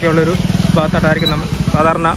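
A person talking over a motorcycle engine running steadily underneath.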